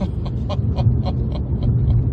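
Mazda RX-8's twin-rotor Wankel rotary engine running hard under acceleration, a steady loud rumble inside the cabin, with a man laughing in short rapid pulses over it.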